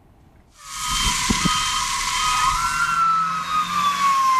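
An emergency vehicle's siren wailing, its pitch rising slowly and then starting to fall, over a loud steady hiss with a few low knocks. It begins about half a second in, after a brief silence.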